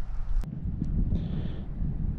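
Low rumble of wind buffeting the microphone outdoors, with a sharp click about half a second in and a brief faint high hiss just past the middle.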